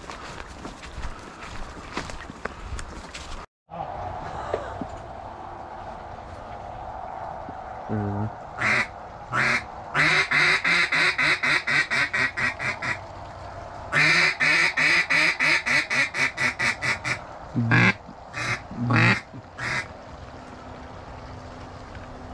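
Footsteps rustling through dry brush and leaves for the first few seconds. Then, after a cut, a duck call is blown close by: a few single quacks, two long runs of rapid quacks at about five a second, and a few more quacks near the end.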